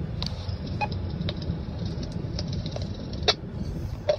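Road and engine noise inside a moving car's cabin, a steady low rumble, with a brief beep just under a second in and a few light clicks.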